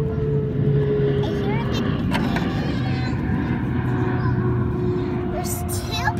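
A large airplane flying over, a steady rumbling drone whose pitch falls slowly as it passes.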